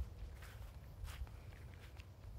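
Three faint footsteps, about two-thirds of a second apart, over a low steady rumble.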